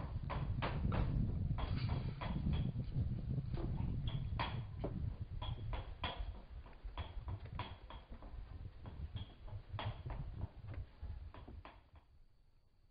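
Irregular knocks and clicks, about one or two a second, over a low rumble; the sound drops away suddenly at the end.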